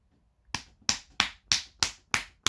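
A steady run of sharp finger snaps, about three a second, starting half a second in.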